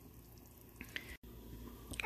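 Faint simmering of a pot of chicken broth, with a few small bubble pops.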